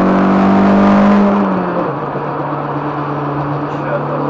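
Car engine heard from inside the cabin, pulling hard under acceleration, its pitch climbing until it drops about a second and a half in on an upshift. It then runs on at a lower, steady pitch with road noise.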